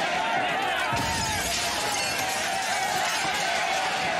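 Glass shattering and clinking over a crowd of voices, a continuous dense clatter, with a low thud about a second in.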